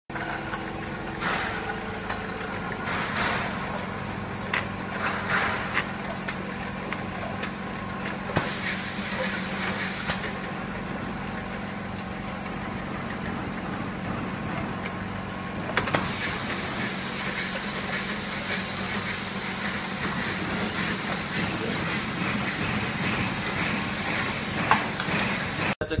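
Automatic bottle capping machine running: a steady hum with scattered clicks in the first few seconds, and a loud hiss about eight to ten seconds in and again from about sixteen seconds on.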